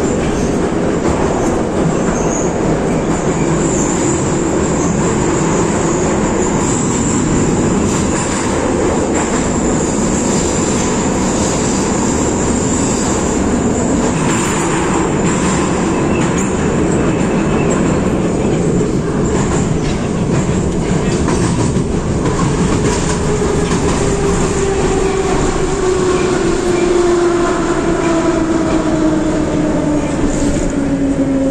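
81-717.5M Moscow metro car running through a tunnel, heard from inside: a loud, steady roar of wheels on rail, with a thin high squeal in the first half. Over the last several seconds the traction motor whine falls steadily in pitch as the train slows.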